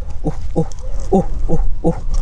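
A run of short animal calls, each falling in pitch, about five in two seconds at an uneven pace, over a steady low rumble.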